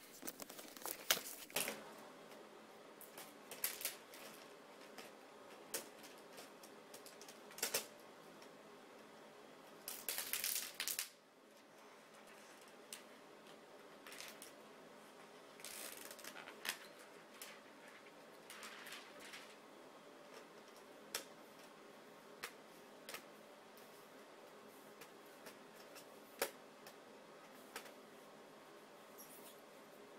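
Faint, irregular clicks and short rustles of plastic laptop parts being handled, as the LCD bezel is pressed and snapped back onto the display lid, with a longer rustling burst about ten seconds in.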